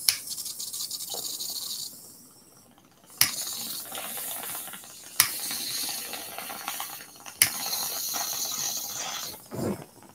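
A lighter held to a bong's bowl, its flame hissing steadily in stretches of about two seconds. It is relit with a sharp click three times.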